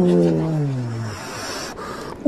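A man's long cry of surprise that falls in pitch over about a second, at the sudden strike of a trout on his lure.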